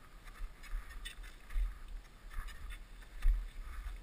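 Footsteps in crampons crunching in snow, irregular crunches with dull low thumps as the feet land. The loudest thump comes about three seconds in.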